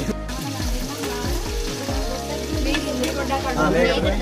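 Pieces of meat frying in hot oil in a metal pan over a wood fire, sizzling steadily as they are stirred with a slotted ladle, under background music with a repeating bass beat.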